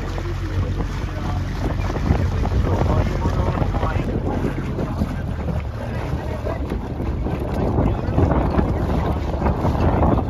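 Wind buffeting the microphone, a steady low rumble over the wash of choppy water around a small boat under way.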